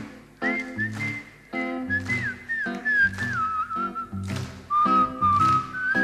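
A single whistled melody, clear and gliding, carried over strummed guitar chords.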